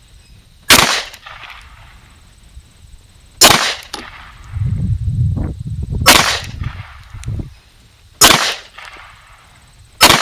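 Four pistol shots from a .380 ACP handgun firing 94-grain hardcast reloads, spaced about two to three seconds apart. Each is a sharp crack with a short echo trailing off.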